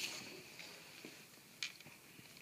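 Faint clicks of small Lego plastic pieces being handled and set onto studs, with a soft rustle at the start; the clearest click comes about one and a half seconds in.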